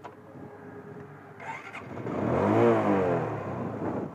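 TVS Apache RTR 160 motorcycle's single-cylinder engine starting about a second and a half in and revving once, its pitch rising to a peak and falling back.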